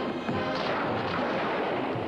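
A dense barrage of rapid film gunfire over a music soundtrack, as pistols shoot up a saloon bar.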